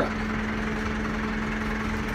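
Massey Ferguson 573 tractor's diesel engine idling steadily, heard from inside the cab as an even hum.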